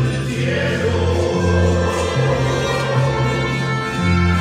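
Mariachi singers in close vocal harmony, holding long notes over a low bass line that steps from note to note.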